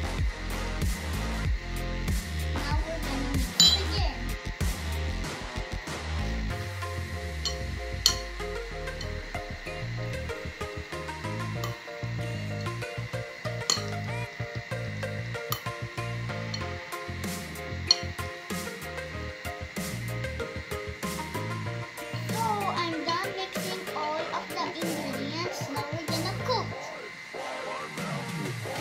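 Background music, with a wire whisk clicking and clinking against a glass mixing bowl as pancake batter is beaten, a few clinks sharper than the rest.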